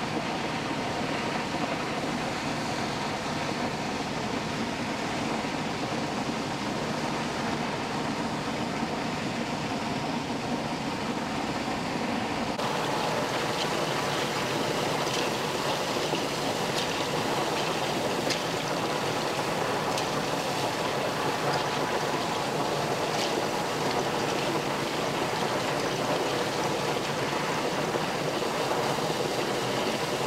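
Steady rushing of a high-pressure water jet gushing from a sheared fire hydrant. About twelve seconds in, the sound turns brighter and more hissy.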